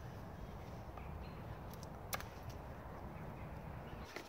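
A knife blade cutting into a wooden stick to carve a point: a few light clicks and one sharper snick about two seconds in, over a low steady background rumble that stops at the very end.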